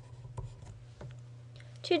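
A few faint, scattered clicks or taps over a steady low hum.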